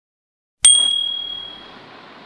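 Notification-bell 'ding' sound effect about half a second in: a sharp strike followed by a high ringing tone that fades away over about a second, leaving a faint hiss.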